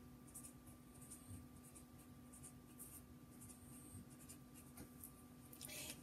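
Faint, intermittent scratching of handwriting, a pen moving across a writing surface in short strokes, over a faint steady electrical hum.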